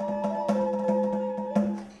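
Renaissance-style folk music: a wooden recorder plays sustained melody notes over a steady low drone, with a few sharp hand-drum strokes.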